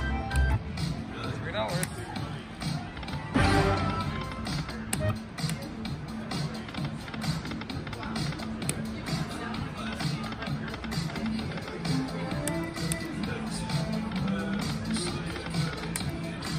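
Wild Leprechaun Gold Reserve slot machine playing its game music, with a run of quick clicks and chimes throughout and voices behind.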